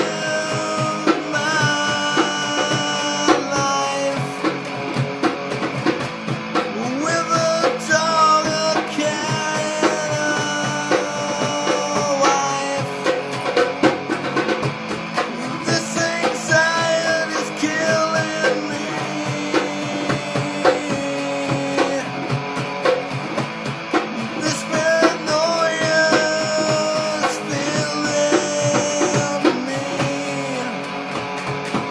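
Rock music: a band with electric guitar and drum kit playing, with pitched lines bending up and down over a steady beat.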